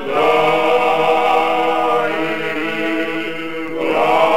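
Men's choir singing Georgian polyphonic folk song, a mravalzhamieri, voices in close harmony on long held notes, a new phrase starting at the very beginning. It is an old recording with dull, treble-less sound.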